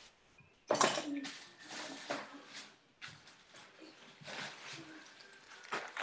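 Plastic wrapping rustling and crinkling around a lump of pottery clay as it is handled, in several irregular short bursts.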